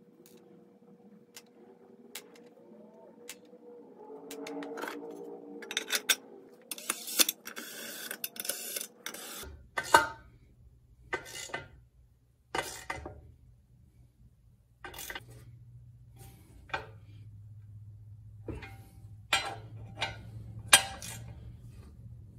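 An aerosol can of brake cleaner spraying in one hiss of about two and a half seconds, flushing out the cast aluminium oil pan. Then a series of single sharp metallic clinks as hand tools work on the pan and its baffle plate.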